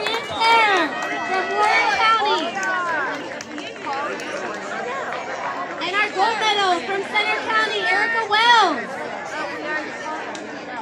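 Several people nearby talking at the same time, an overlapping chatter of voices with no single speaker standing out, louder about half a second in and again from about six seconds in.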